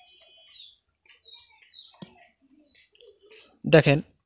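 A small bird chirping faintly in the background: short notes sliding downward, in quick runs of two or three, several times.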